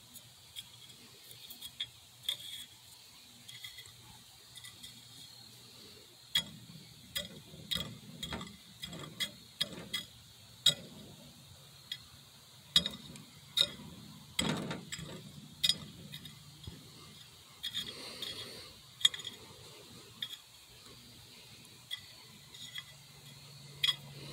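A thin stick poking and scraping through powdered aluminium oxide and fused lumps on a glass microwave turntable, breaking up the melt to find the ruby pieces: irregular small clicks and scratches, sparse at first and busier from about six seconds in.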